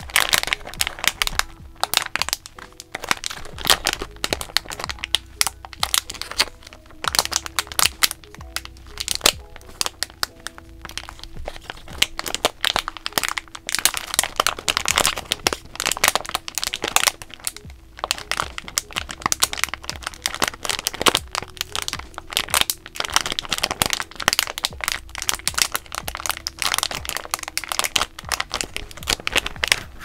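Small clear plastic parts bags crinkling and crackling in the hands as they are turned and squeezed, in quick irregular crackles throughout. Soft lo-fi hip-hop music plays underneath.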